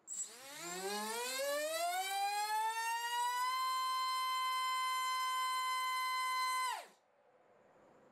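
BrotherHobby R5 2306-2450KV brushless motor on 4S, spinning a Gemfan 5045 bullnose two-blade prop on a thrust stand and run up to full throttle. Its whine rises in pitch for about three and a half seconds, holds steady at full power (about 30,800 RPM, 1.3 kg of thrust), then falls quickly and stops near the end.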